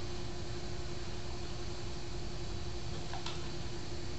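Steady indoor room noise: an even hiss with a constant low hum, and one faint tick about three seconds in.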